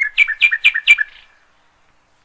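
A bird calling: four quick chirps in about a second.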